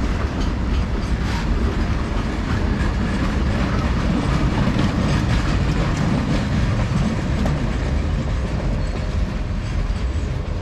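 Freight train wagons rolling past at close range: a steady heavy rumble of wheels on rails, with clicks as the wheels cross rail joints.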